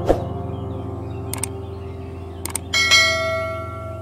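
Subscribe-button animation sound effects: a soft thump at the start, a few short mouse-like clicks, then a bright notification bell ding that rings and fades, over quiet background music.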